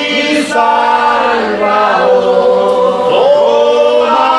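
Congregation singing a praise hymn together, many voices holding long notes that glide from one pitch to the next.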